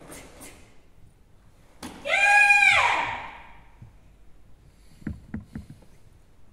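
A young karateka's kiai during a kata: one loud, high-pitched shout about two seconds in, held for just under a second and then falling off. A couple of sharp snaps come at the start and a few light knocks near the end.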